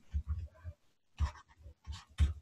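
Faint taps and soft knocks from a stylus writing on a drawing tablet, five or six short ones scattered unevenly.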